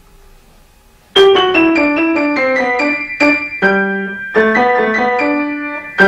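Grand piano being played: after about a second of quiet, a quick, lively line of single notes begins, with a few deeper notes struck and held around the middle.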